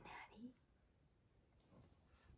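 Near silence: room tone, after one softly spoken word at the start.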